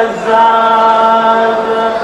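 A man singing a mawwal unaccompanied, holding one long, steady note after a brief break at the start.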